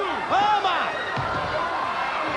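Excited voices cry out over arena crowd noise, then a heavy thud a little over a second in: a wrestler's body landing on the floor outside the ring after being thrown over the top rope.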